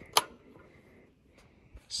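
A single sharp metallic click from the miter saw's metal storage bracket being handled at the slide rails, then near quiet with a faint tap before the end.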